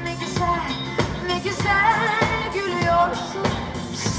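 Live pop music: a band playing over a steady drum beat, with a voice singing a wavering melody about halfway through.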